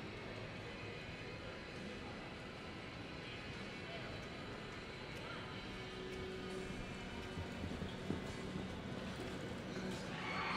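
A horse's hoofbeats loping on soft arena dirt, under a steady murmur of voices from the stands.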